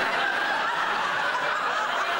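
Studio audience laughing, many people together at a steady level.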